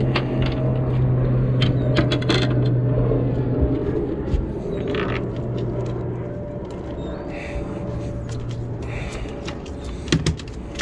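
A freshly landed sheepshead flopping on a fiberglass boat deck: a string of sharp clicks and scrapes, thickest about two seconds in, over a steady low hum that stops near the end.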